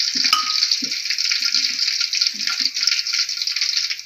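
Chopped spring onions sizzling steadily in hot oil in an aluminium wok, with a brief click about a third of a second in.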